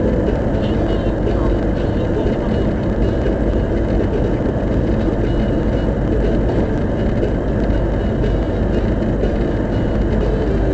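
Steady road and engine noise of a car cruising at expressway speed through a tunnel, heard from inside the cabin. It is a constant low rumble with no sudden events.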